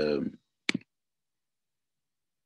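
A single sharp click, just under a second in, right after a man's speech trails off.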